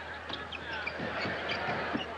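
Arena crowd noise during live basketball play, with scattered short squeaks and thuds from the court, under a steady low hum.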